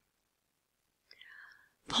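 Near silence, then a faint breath drawn in about a second in, and a voice starts speaking right at the end.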